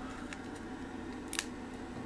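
A few faint clicks as a circuit board is handled and a freshly desoldered connector is gripped by hand, over a steady low hum.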